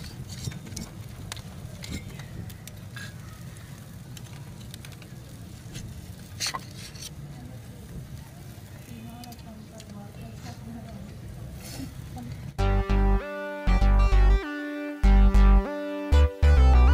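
Faint clicks of metal tongs against a metal skewer and plate as grilled chicken pieces are pulled off, over a steady low outdoor rumble. Near the end a guitar music clip starts abruptly and is much louder.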